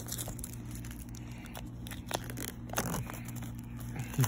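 Clear plastic shrink wrap being torn and crinkled off a small cardboard AirPods box, with scattered sharp crackles that bunch up in the second half.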